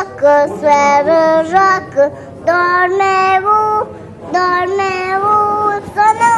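A three-year-old girl singing a song unaccompanied, in held notes grouped into short phrases with brief breaks between them.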